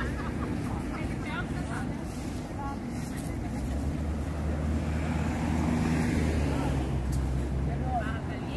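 A motor vehicle's engine running nearby: a low, steady hum that grows louder from about halfway through. Faint voices of people around can be heard as well.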